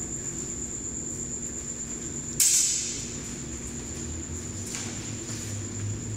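A longsword and a one-handed arming sword clash once about two and a half seconds in: a sharp blade-on-blade strike that rings briefly. A much fainter knock follows near five seconds.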